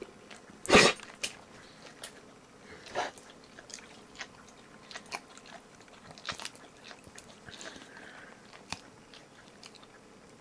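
Pit bull smacking and licking its mouth as it works on a mouthful of peanut butter: irregular wet clicks and smacks, the loudest about a second in and another at about three seconds.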